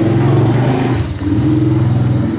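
A motor engine running close by, steady apart from a short dip about a second in.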